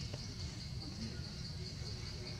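Insects trilling steadily in a high, finely pulsing tone over a low, steady background rumble, with a few faint clicks.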